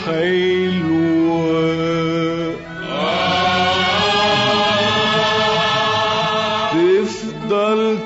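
Arabic orchestral music from a live concert recording, in long held melodic notes: a note steps down about a second in, a long sustained note runs from about three seconds in to about seven, then the line slides up into a new note.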